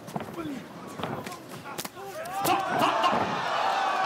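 Sharp smacks of kicks and punches landing in a kickboxing exchange, then, about halfway through, the arena crowd bursts into loud cheering and shouting as both fighters go down to the canvas.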